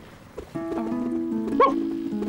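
Soft background music of held notes begins about half a second in, and a cartoon dog gives one short yip near the end.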